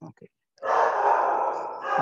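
A long, loud breathy exhale close to the microphone, after a few short mouth clicks, with a spoken "um" starting at the very end.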